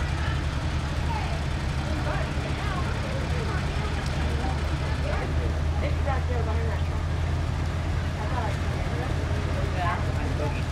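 Engines of slow-moving vintage parade vehicles running at low speed as they pass: a steady low hum with no revving. Bystanders talk quietly over it.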